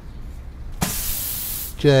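A cartoon spray-hiss sound effect that starts with a click and lasts just under a second, marking the letter's makeover.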